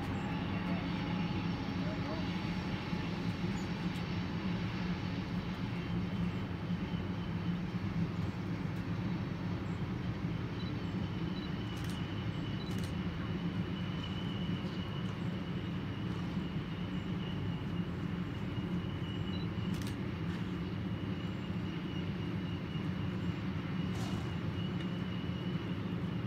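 Tank cars of a loaded oil train rolling past with a steady low rumble of wheels on rail. A thin high squeal joins about ten seconds in and holds, and a few sharp ticks sound.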